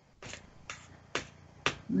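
Four light clicks or taps, about half a second apart, from hands handling small acrylic paint jars and brushes.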